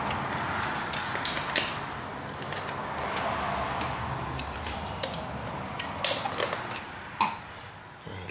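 Light, irregular metallic clicks and clinks from a wrench turning the chain-tension bolt between a minibike's jack plate and engine.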